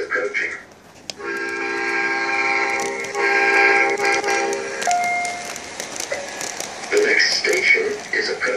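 Lionel LionChief O scale Metro-North M7 model train sounding its recorded horn through the model's speaker: two long blasts starting about a second in, each lasting about two seconds.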